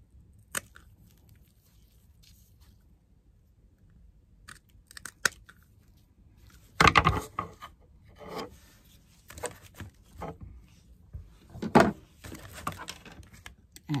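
Small craft scissors snipping ribbon in short, separate cuts, with the rustle of the ribbon being handled. The cuts are sparse at first and come more often later, the loudest about seven and twelve seconds in.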